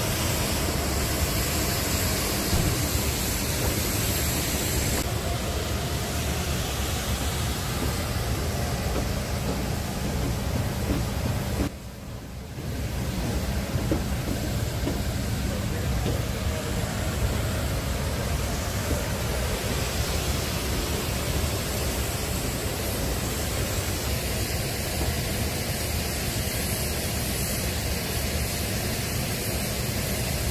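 Steady, loud rushing noise of jet aircraft running on an airport apron, with a faint high steady whine. It dips briefly about twelve seconds in, with faint voices at times.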